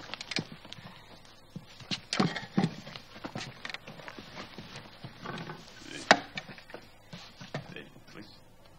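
Footsteps and wooden knocks on stage boards as a stool is carried over and set down and people sit at it. The irregular knocks include a sharp, loudest one about six seconds in.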